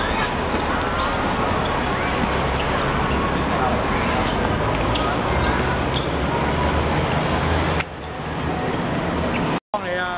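Live sound of a football match on a hard court: players' distant shouts and sharp thuds of the ball being kicked and bouncing, over a steady noisy background. The sound drops a little near the end and breaks off for a split second just before it ends.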